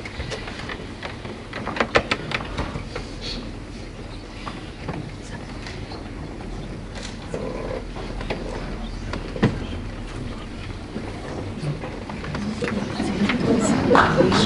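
Hushed theatre hall during a pause on stage: steady low room noise and hum, with a few small clicks and knocks and faint murmuring. Near the end the noise swells as the audience grows louder.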